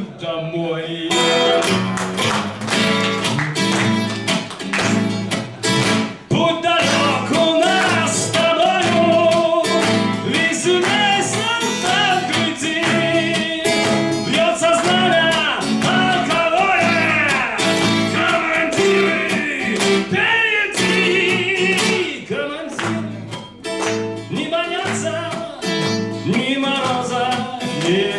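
A man singing a song while strumming chords on a twelve-string acoustic guitar, played live.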